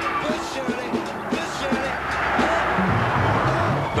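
Background music, with a Range Rover passing close by in the second half: a rush of tyre and wind noise swells over the last two seconds and peaks as it goes past.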